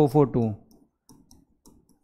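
A man's voice trailing off about half a second in, then a few faint, scattered clicks and taps of a pen writing on an interactive display board.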